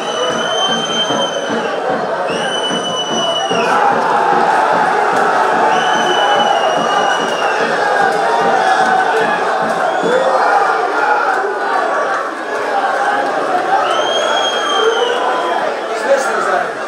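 Football stadium crowd noise throughout, with a whistle blown in four long blasts at the same pitch: two in the first four seconds, one about six seconds in, and one near the end.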